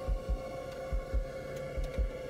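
Heartbeat-style sound effect in the background track: paired low thumps, a little under one pair a second, over a steady droning hum.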